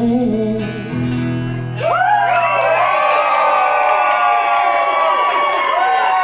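A live band's guitar plays the song's last chord, which rings out under a final sung note. About two seconds in, the wedding guests break into cheering and whooping that carries on over the fading chord.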